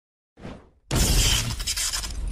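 Dead silence, then a short rush of noise, then about a second in a sudden loud crash like glass shattering: a sound effect whose breaking runs on and fades.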